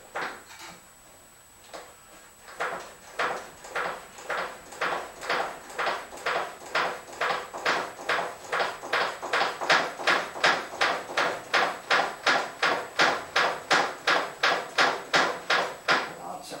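The brakes of a 1967 VW Beetle being pumped to bleed the rear brake line: a few scattered strokes, then a steady run of short mechanical strokes at about two to three a second that stops suddenly near the end.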